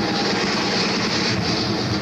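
Heavy metal band playing live, heard on a raw, distorted audience tape: a dense wall of electric guitars and drums.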